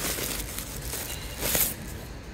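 Thin plastic wrapping crinkling as it is handled and pulled away, with a louder rustle about one and a half seconds in.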